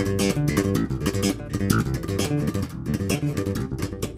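Peavey Cirrus electric bass played with the double-thumb slap technique: a fast, even run of percussive thumb-down, thumb-up and plucked notes. The open strings are left unmuted, so an open A rings against the C-minor line.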